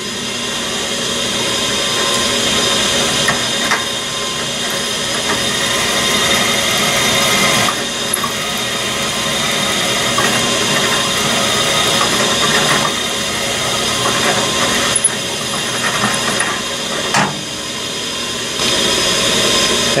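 Drill press running steadily while its bit drills into an aluminum casting, cutting an undersize hole ahead of a 3/16-inch reamer. There are a few brief clicks.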